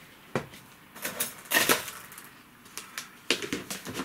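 Light clicks and clatters of a clear plastic orchid pot filled with expanded clay pebbles being handled and set down on a table: one click shortly after the start, a cluster in the middle, and another cluster near the end.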